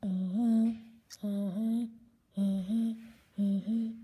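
A person humming in four short phrases, each stepping up from a lower note to a higher one.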